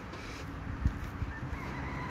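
Faint outdoor background in a pause between words, with a few soft low thumps about a second in and a faint thin high tone in the second half.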